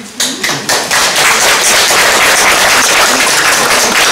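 Audience applauding: many hands clapping, breaking out suddenly and going on steadily.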